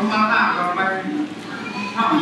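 An elderly Thai monk speaking during a sermon, his voice picked up by a clip-on microphone, with a short pause about halfway through.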